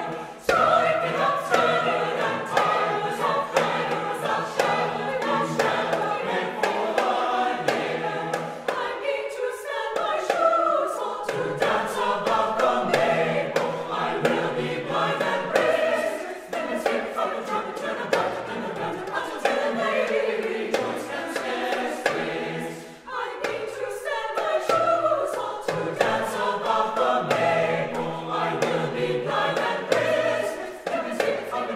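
Mixed choir singing an English Renaissance madrigal, with a small hand drum (tabor) tapping a steady beat under the voices. The singing breaks off briefly between phrases about a third of the way in and again about three quarters through.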